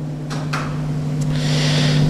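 A man draws breath into a close microphone, with a short breath early on and a louder hissing inhale building near the end, over a steady low electrical hum.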